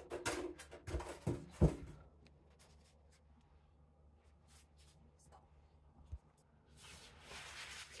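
Fabric dust bag rustling as hands grip and tug it over a large vinyl figure, with several sharp handling noises in the first two seconds. After a quiet stretch comes a soft low thump about six seconds in, then a longer rustle near the end as the bag is pulled up.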